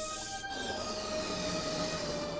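Cartoon sound effect of air hissing out as a fish's swim bladder deflates, starting about half a second in and falling in pitch, over a held note of background music.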